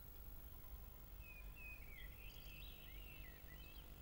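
Faint songbird song, a run of quick rising and falling warbling notes from about a second in until shortly before the end, over a low steady background rumble.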